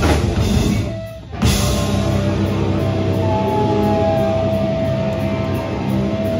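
Hardcore band playing live, with distorted guitars and a drum kit. The music briefly drops out about a second in, then comes back, with a steady high tone ringing over it through the second half.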